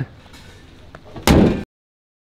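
A car bonnet slammed shut: one loud thud about a second in, then the sound cuts off abruptly.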